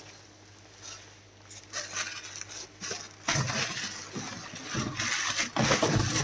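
Plastic bubble wrap rustling and crinkling as it is handled and pulled off, in irregular crackles that get louder about three seconds in.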